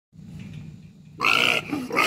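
Pig squealing loudly, starting about a second in: a pig separated from its pen-mates, calling to be back with them.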